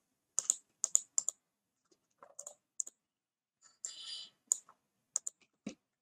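Computer keyboard being typed on in short irregular taps and clicks, about a dozen in all, with a brief rustle about four seconds in.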